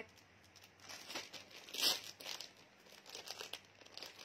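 Plastic packaging crinkling as a bagged clothing set is handled, in short irregular rustles with the loudest about two seconds in.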